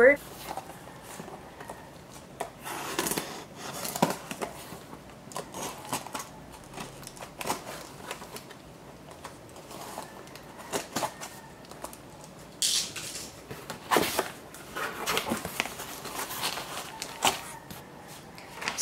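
A taped cardboard shipping box being opened by hand: scattered clicks, scrapes and rustles of tape and cardboard flaps, with a longer hissing rustle about thirteen seconds in. Paper rustles near the end as the invoice inside is handled.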